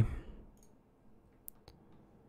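Computer mouse clicking: a sharp click about a second and a half in, followed closely by a second, fainter one, over quiet room tone.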